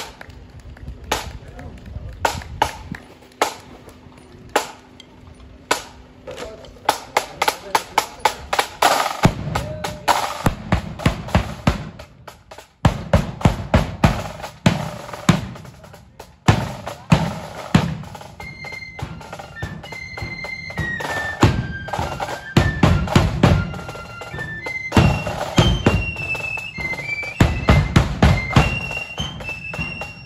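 Marching flute band starting up. The side drums tap single strokes, then quicken into a roll about seven seconds in that leads into a steady beat with bass drum. From about eighteen seconds in the flutes play a high melody over the drums.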